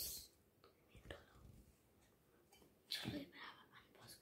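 Faint whispering in a few short, soft bursts, the loudest about three seconds in.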